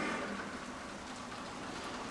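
Steady background hiss with no distinct events, a rain-like wash of noise.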